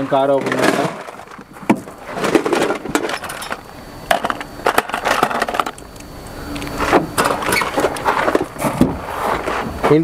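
People talking in the background, broken by a few sharp clicks and knocks; the front door of a Renault Duster is unlatched and swung open in the last few seconds.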